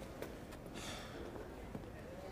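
A soft exhaled breath about half a second in, over quiet ambience.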